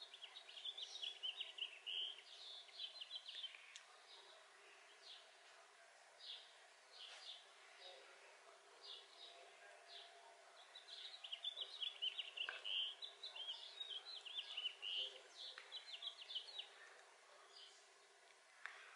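Faint bird twittering: quick high chirps in a run over the first few seconds and again from about eleven to fifteen seconds in, with scattered single chirps between.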